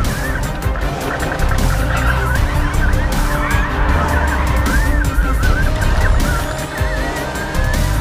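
Formula E car's tyres squealing in wavering, wobbling pitches as it spins in its own tyre smoke, over background music with a heavy deep bass.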